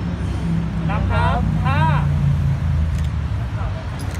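A motor vehicle engine running with a low steady rumble, its hum sinking slightly in pitch over the first couple of seconds. A voice calls out twice, briefly, about a second in.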